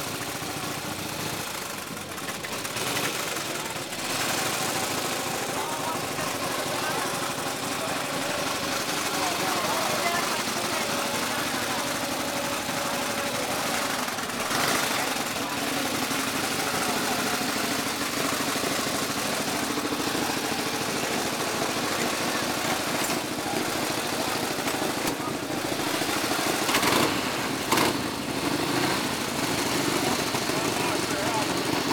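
Antique Harley-Davidson motorcycle engines idling steadily, with voices of people standing around. A couple of louder sharp sounds come near the end.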